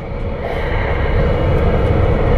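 Running noise of a KiHa 281 series diesel express railcar heard inside the passenger car: a low, steady rumble that grows steadily louder.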